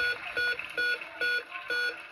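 The Price Is Right Big Wheel's electronic spin sound: short beeps, one for each segment that passes the pointer, about three a second and slowing slightly as the wheel winds down.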